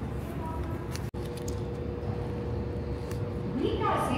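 Fast-food dining room background: a steady low rumble with indistinct voices and a faint steady hum, cut by a brief dropout about a second in, with a voice starting near the end.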